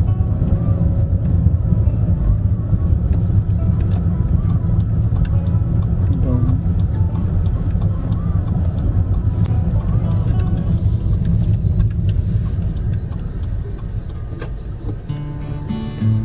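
Steady low rumble of a car's engine and tyres, heard from inside the cabin while driving, easing off a little near the end.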